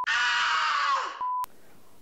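Edited-in sound effect: about a second of a harsh, steady pitched sound that drops in pitch as it ends, followed by a short beep.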